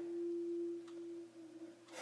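A single steady mid-low tone, a sustained note from the background music bed, holding and then fading away about a second and a half in.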